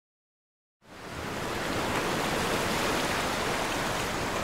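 Silence, then a steady rushing noise fades in within the first second and holds even, like wind or moving water.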